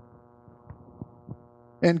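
Faint steady mains hum with a buzz of overtones during a pause, with a few soft ticks. A man's voice starts near the end.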